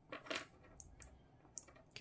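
Light metallic clicks and taps from a hand working the cables or switch of an open PC test bench: a quick cluster of clicks just after the start, then a few single ticks.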